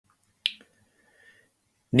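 A single sharp click about half a second in, followed by a faint tick, then a man's voice starts speaking near the end.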